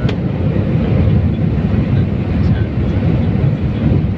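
Jet airliner cabin noise beside the wing engine during the climb: a steady low roar of the engines and rushing air. There is a brief click right at the start.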